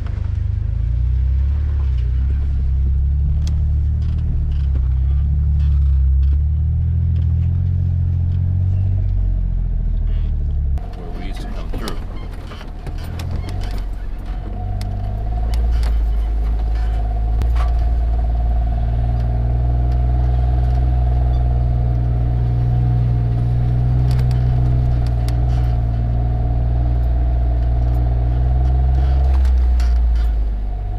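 Jeep Wrangler JK running at low speed along a rough off-road trail, a steady low engine and drivetrain drone. About eleven seconds in the sound changes abruptly and a steady whine rides over the rumble.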